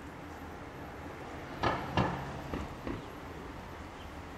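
Footsteps crunching in snow, four steps about halfway through, over a steady low background hum.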